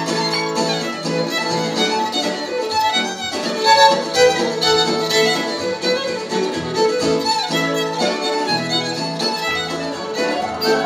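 A fiddle and an autoharp playing a folk tune together, the bowed fiddle over the strummed strings of the autoharp.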